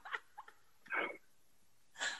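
Faint, short squeaks of held-in laughter, the clearest about a second in.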